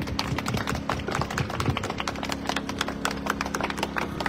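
A small crowd clapping: many quick, irregular hand claps, with a steady low hum underneath.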